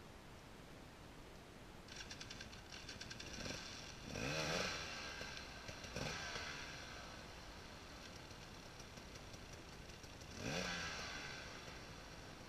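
Off-road enduro motorcycle engine revved in two rising bursts, one about four seconds in and another near the end, over a steady rattling engine note.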